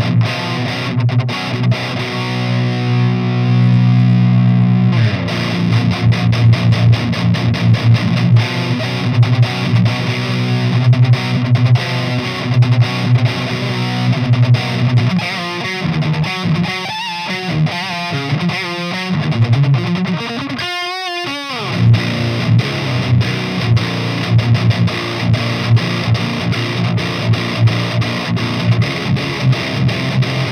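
Seven-string electric guitar played through a Fortin high-gain tube amp head with heavy distortion: chugging low riffs, with a chord held for a few seconds early on.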